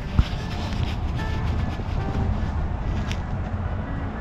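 Faint background music under a steady low outdoor rumble, with a single sharp knock just after the start.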